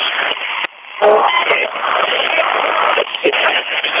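Radio sweep: a radio scanning quickly across stations, giving a continuous stream of chopped broadcast speech fragments and static, with a brief gap about two-thirds of a second in.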